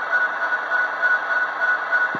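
Athearn Genesis model diesel locomotive's onboard sound system playing a steady idle: a hiss with a faint whine pulsing several times a second.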